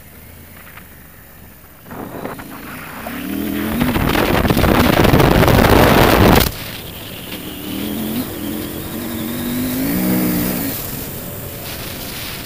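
KTM 890 Adventure R's parallel-twin engine pulling up through the revs from about two seconds in, under a loud rushing noise that drops off suddenly at about six and a half seconds. The engine then picks up and rises in pitch again.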